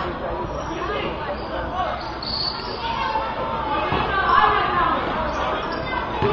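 Players and spectators chattering and calling out during a youth basketball game, with a basketball bouncing on the hard court now and then.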